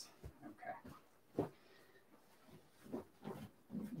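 Faint, scattered rustles and soft handling noises from a cloth gi and a pillow-stuffed grappling dummy being pulled and straightened by hand, with a short spoken 'okay' about a second and a half in.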